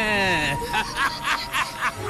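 A voice drawn out in a long wavering cry that falls away about half a second in, then breaks into cackling laughter in quick short bursts. A film score with a steady high tone plays under it.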